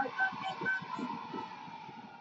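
Quiet, indistinct talk over a faint steady studio background that fades away.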